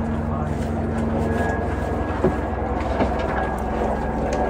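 A steady low mechanical hum, with a couple of faint knocks about two and three seconds in.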